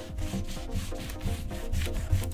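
A whiteboard eraser scrubbing back and forth over waxy dry-erase crayon marks on a whiteboard, a dry rubbing sound in quick repeated strokes.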